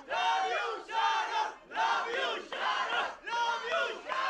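A group of press photographers shouting over one another to get the attention of the people posing: many loud, overlapping calls in about five bursts, each under a second long.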